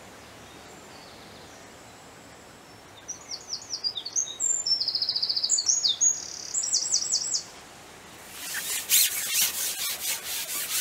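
A songbird sings a varied song with fast trills, starting about three seconds in and lasting about four seconds. Near the end a quick rasping rub starts as the long fishing pole is slid back.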